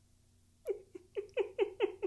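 A man's stifled laughter behind his hand: a run of about seven short giggling bursts, each falling in pitch, about four a second, starting about two-thirds of a second in.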